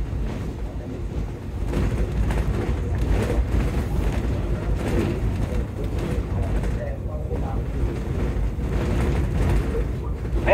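Interior running noise of a Volvo B9TL double-decker bus on the move, heard from the upper deck: a steady low engine and road rumble with scattered knocks and rattles.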